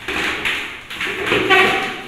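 Plastic blender jar being set and twisted onto its motor base: a run of irregular knocks and scrapes, with a short ring about three-quarters of the way through.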